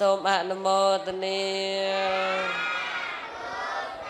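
A young Buddhist novice monk chanting into a microphone in long held notes, with a quick wavering turn in pitch near the start. In the second half the chant moves to higher, sliding pitches.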